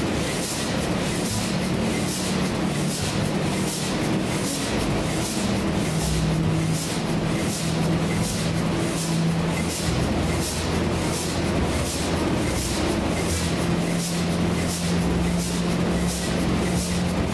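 Burmeister & Wain DM884WS-150 slow-speed diesel engine running slowly: a regular hissing beat about twice a second over a low steady hum.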